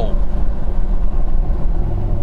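Steady low drone of the Carver One on the move, heard from inside the cabin: its small turbocharged three-cylinder engine together with tyre and road noise.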